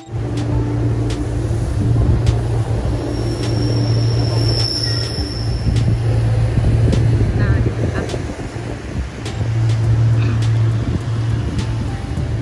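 Loud wind noise and road rumble on a bike-mounted phone microphone while cycling along a city street, with passing traffic and scattered small knocks from the ride. A brief high thin whine sounds about four to five seconds in.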